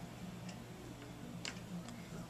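A few faint, scattered clicks, about a second apart, over a low steady hum.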